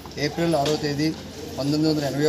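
A man speaking continuously in Telugu, giving a statement into reporters' microphones.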